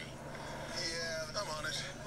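A voice from a TV commercial, heard through a phone's small speaker over a steady low hum.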